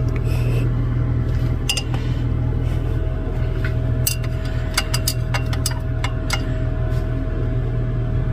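A steady low electrical hum with a faint, higher steady tone above it, and a handful of light clicks and clinks, most of them about halfway through.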